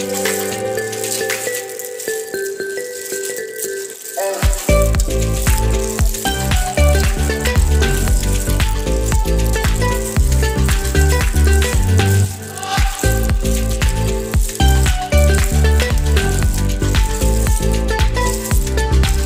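Background music: a song with a steady melody, joined about four seconds in by a heavy bass beat and rattling percussion that keep a regular rhythm.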